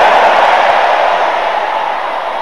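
Congregation's many voices raised together in a dense, wordless roar that slowly fades.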